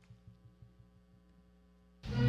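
Near silence: a faint steady electrical hum, with a few soft low thumps in the first second.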